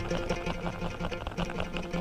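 Electric guitar picked fast with the tip of the index finger used as a pick, driven from the wrist: a quick, even stream of picked notes.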